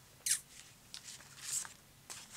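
Brief papery rustles of a sticker pack and paper being handled on a craft desk: a short swish about a quarter second in, then fainter rustles around one and one and a half seconds.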